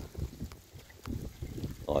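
Wind buffeting a phone's microphone in gusts, with a few faint ticks that fit raindrops striking the phone.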